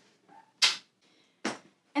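Two brief rustles from hands handling a fabric tote bag, about a second apart.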